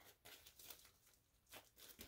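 Near silence with faint crinkling of plastic wax-melt packaging being handled, in two short patches about half a second in and near the end.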